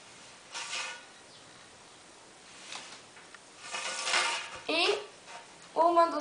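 Pencil and ruler working on sheet pattern paper: a brief scratch about half a second in, then a longer scraping of the ruler being moved across the paper around four seconds in, ending in a short rising squeak.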